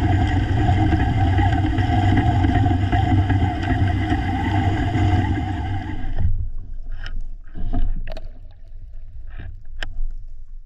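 A motorboat's engine and propeller heard underwater as a steady drone with a hum. It cuts off suddenly about six seconds in, leaving quiet water with a few scattered clicks and knocks.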